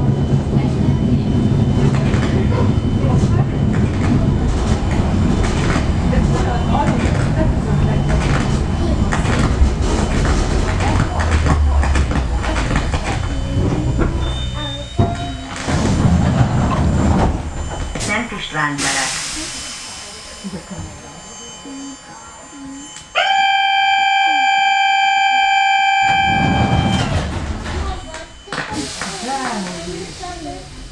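Suburban electric train running on the track, with heavy rumble and wheel clicks that die away as it slows to a stop. About nineteen seconds in there is a burst of hissing air. A few seconds later a steady pitched signal tone sounds for about three seconds while the train stands still.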